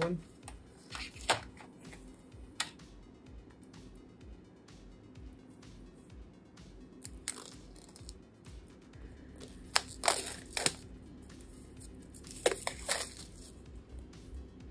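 Thin plastic shrink-wrap being torn and peeled off a phone box: scattered sharp crinkling and tearing crackles, bunched about ten seconds in and again near the end, over faint background music.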